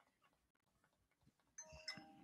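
Near silence, with a faint chime of a few steady tones starting near the end.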